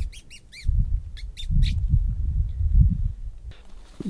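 Squirrel giving short, high-pitched chirps, three quick ones at the start and three more about a second in, over a low, uneven rumble.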